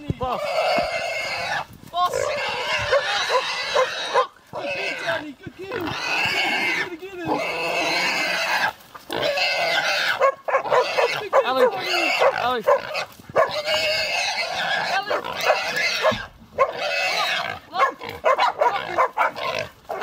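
A pig squealing loudly in long, drawn-out squeals broken by short pauses, the cries of a pig caught and held by hunting dogs.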